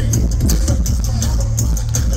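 Loud DJ dance music over a club PA: a heavy, sustained bass line under a steady beat of high hi-hat ticks.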